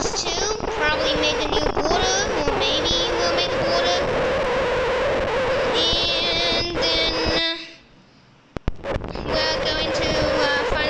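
A child singing a wordless tune, holding and bending notes, with a brief pause about three-quarters of the way through.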